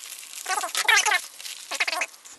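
Plastic bubble mailer rustling and squeaking as it is cut open and a flash drive's plastic blister pack is slid out of it, with a few light clicks near the end.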